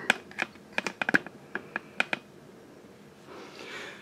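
Light, irregular clicks and taps from hands handling, a quick run of about a dozen over the first two seconds, then quiet with a faint hiss near the end.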